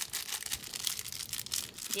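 A crinkle toy hanging from a baby play gym being crinkled in a small child's hand: a continuous crackly rustle.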